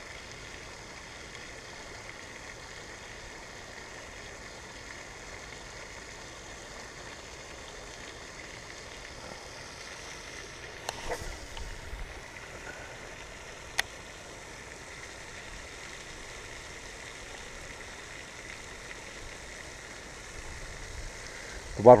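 Steady hiss of a pond's spray fountain falling back into the water, with a brief rustle of handling about eleven seconds in and a single sharp click a few seconds later.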